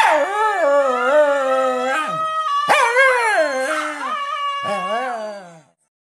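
Jack Russell Terrier howling along to a recording of its own howl, in long howls whose pitch wavers up and down, broken off a few times, then cutting off suddenly near the end.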